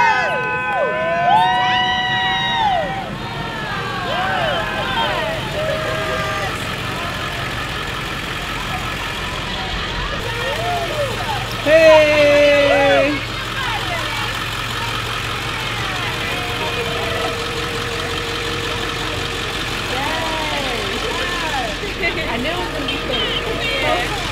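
Converted school bus's engine idling, under excited shouting and cheering from a small crowd. About halfway through, a loud held blast of just over a second stands out above the rest.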